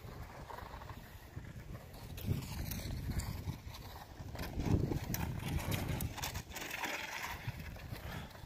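Footsteps of a person walking on grass and a paved path, with wind and handling rumble on a phone's microphone.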